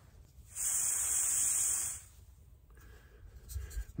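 A short hiss of escaping gas, about a second and a half long, starting and stopping abruptly, as the Pathfinder titanium canister stove is threaded onto a gas canister's valve.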